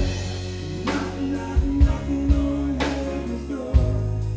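Live band music: a man singing over a drum kit, bass and guitar, with a long held note in the middle and a drum hit near the end.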